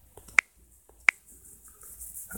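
Two short, sharp clicks about two-thirds of a second apart.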